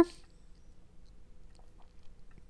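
A few faint computer-mouse clicks over quiet room tone with a low, steady hum.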